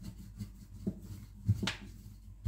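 Wooden rolling pin rolled back and forth over thin pastry dough on a marble countertop: a low rubbing with a few short knocks, the loudest about a second and a half in.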